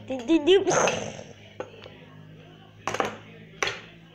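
A child's voice making a short warbling vocal sound, pitch wobbling up and down, followed by a breathy hiss; later two brief rustling clicks near the end.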